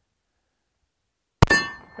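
A single .45 ACP shot from a Smith & Wesson 1911 E-Series pistol, about one and a half seconds in, hitting a steel target. The steel rings with a clear, fading tone, the sign of a hit.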